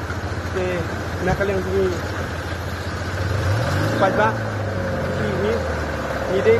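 An SUV engine runs at low speed as the vehicle drives slowly through floodwater on the road. About three and a half seconds in, its note rises and then holds higher. Voices are heard in the background.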